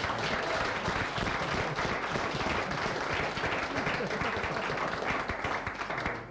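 Audience applauding steadily: a dense patter of many hands clapping.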